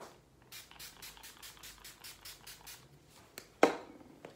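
A pump mist spray bottle, a makeup setting spray, sprayed toward the face about a dozen times in quick succession, roughly five hissing puffs a second. Near the end a single sharp thump.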